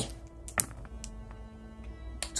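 A few six-sided dice rolled into a folding dice tray: a short clatter of sharp clicks about half a second in, then a couple of lighter ticks as they settle. Faint background music underneath.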